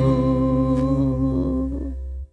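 A worship band and singers hold one steady, sustained final chord of a praise song, with a strong low bass note under it. The chord fades out near the end as the song closes.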